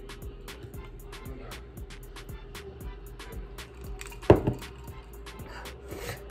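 Background music with a quick steady beat of ticks, about four a second. About four seconds in, a single sharp loud knock, like a hard object set down or bumped.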